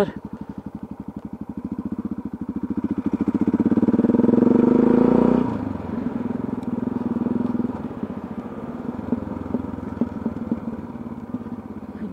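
Motorcycle engine pulling hard, its note rising and growing louder for about five seconds, then the throttle shuts off abruptly and it runs on at lower revs, easing off toward the end as the bike slows.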